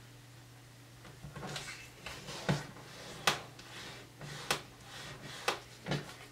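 A cardstock strip being folded and creased by hand on a tabletop: paper rustling, with several sharp taps and clicks as it is pressed flat.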